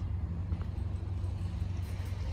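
Steady low rumble with a faint steady hum: outdoor background noise, with no distinct event.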